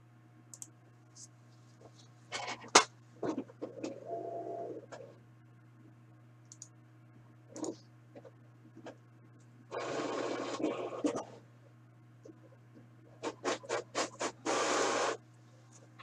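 Off-camera handling on a table: irregular scraping and rustling with sharp clicks, a long scrape about ten seconds in and a quick run of clicks near the end, over a steady low electrical hum.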